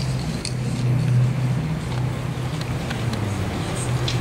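A low, steady rumble with a few faint clicks over it.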